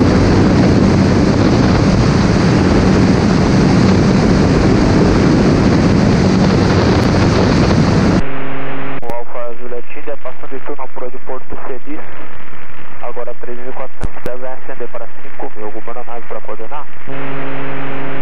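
Inpaer Conquest 180 light aircraft in cruise, heard from an outside-mounted camera as a loud steady rush of wind and engine noise. About eight seconds in, the sound cuts to the cabin headset intercom, where voices come over the radio.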